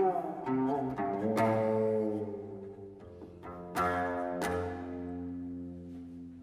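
Seven-string guqin played solo: single plucked notes ring out and slowly fade, one sliding in pitch near the start, with fresh plucks at about one and a half and four seconds in.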